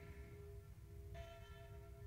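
Faint background music of sustained bell-like tones, with a new, higher chord coming in about a second in.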